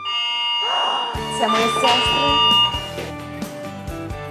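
An electronic doorbell chime ringing as a few steady tones, with background music with a beat coming in about a second in.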